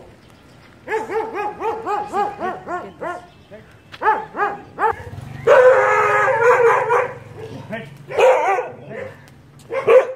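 Dogs barking at a person walking by, in quick runs of short barks. A longer drawn-out call comes about halfway through, and one loud bark comes at the very end.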